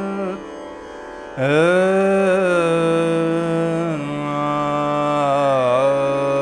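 Male Hindustani classical voice singing a slow alap in Raag Kedar on long held vowels, over the ringing strings of a swarmandal. The voice eases off briefly near the start, comes back strongly about a second and a half in on a rising note with a strum of the strings, and settles onto a lower held note about four seconds in.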